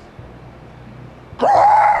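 A man lets out one loud, drawn-out yell about one and a half seconds in. It sweeps up sharply in pitch and is then held for nearly a second.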